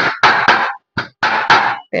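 Large kitchen knife chopping cooked pork fillet on a wooden board: several loud knocks of the blade striking the wood.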